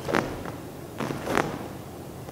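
Fast karate punches: three short swishes of the cotton gi snapping with each strike, the last two close together.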